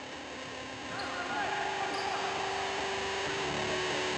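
Echoing sports-hall sound of a youth futsal match: voices and the ball on the wooden floor. Music sits faintly underneath, getting a little louder from about a second in.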